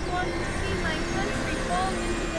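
Experimental electronic drone collage: a dense, steady noisy bed with a low rumble and a held hum, scattered with many short gliding chirps that bend up and down in pitch.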